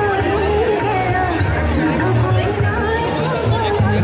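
A crowd talking all around, over music with a bass line that steps between notes.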